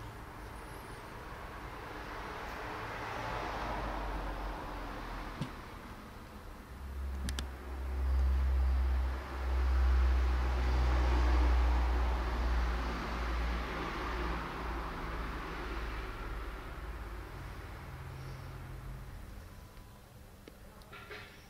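Steady low machine hum with a hiss. A deeper rumble swells in from about seven seconds in and fades out near the end. There is a single sharp click at about the moment the rumble begins.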